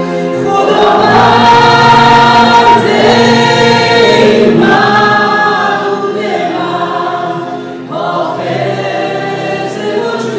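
Slow worship song sung by a group of voices, led by a woman's voice, with stage piano accompaniment; long held notes in phrases, with a short dip just before a new phrase near the end.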